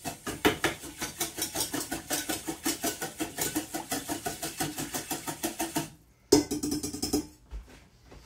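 A whisk beaten rapidly around a bowl, an even clatter of about five or six strokes a second. Near the end, after a short pause, comes one louder knock with a brief ring.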